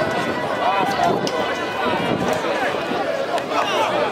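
Several voices of sideline spectators and players talking and calling out over one another at a football match, a steady babble with no single clear speaker.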